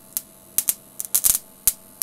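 Spark gap of a home-built coil-driven power circuit snapping in irregular sharp clicks, about a dozen in two seconds with a cluster just past the middle, over a faint steady electrical hum.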